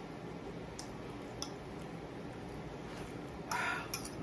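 Eating sounds: a person chewing a mouthful of food, with a few faint fork clicks and a brief louder rasp about three and a half seconds in.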